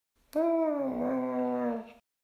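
A single drawn-out animal cry, part of a logo sting: it starts about a third of a second in, dips slightly in pitch, then holds steady for about a second and a half before cutting off.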